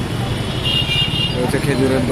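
Busy street ambience: a steady rumble of road traffic, with a brief high-pitched horn-like tone lasting under a second in the middle and voices coming in near the end.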